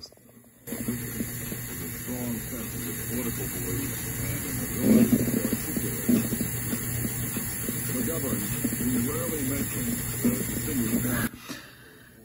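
Cassette tape playing back faintly without amplification: steady tape hiss over a weak recorded voice, starting just under a second in and cutting off shortly before the end. The player's amplification is gone after the repair, but the tape runs at about the right speed following a resistor change in the motor speed circuit.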